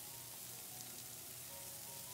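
Chopped onion, chana dal, garlic and ginger frying in coconut oil in a non-stick pan: a faint, steady sizzle, with soft background music over it.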